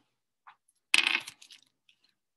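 A short clatter of small hard objects being handled, about a second in, preceded by a faint tap.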